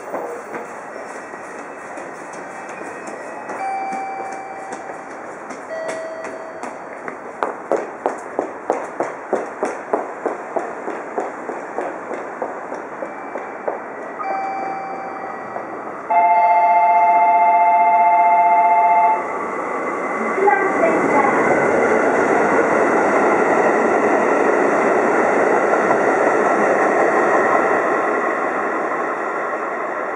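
JR Central Kiya 95 series diesel track-and-overhead-line inspection train approaching and passing. First comes a rhythmic clatter of wheels. Then a loud two-tone horn blast of about three seconds, the loudest sound. Then the steady noise of the diesel railcar running by, fading near the end.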